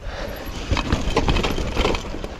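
Mountain bike riding fast down a dirt trail: a steady rumble of wind on the rider-mounted microphone, with an irregular run of knocks and rattles from the bike as it goes over bumps.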